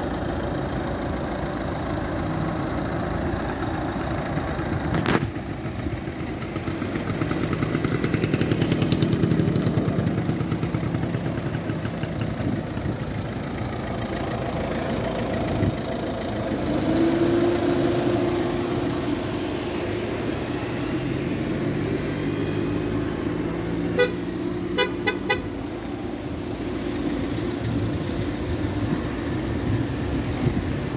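Citroën C3 HDi's diesel engine running steadily, swelling louder twice along the way. Near the end comes a quick run of short beeps.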